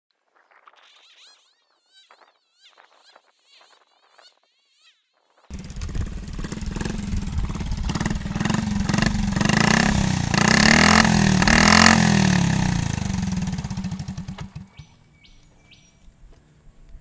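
1971 Honda K2 Mini Trail's small 49 cc single-cylinder four-stroke engine running, coming in suddenly about five seconds in. It is revved up and down a few times, then dies away near the end.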